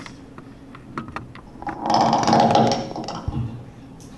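Handling noise from a clip-on lapel microphone being adjusted: scattered clicks, with a louder rustle of cloth and mic for about a second in the middle.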